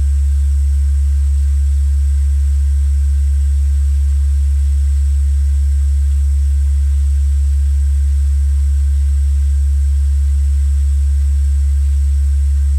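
A loud, steady low hum that does not change, with a faint high-pitched whine above it.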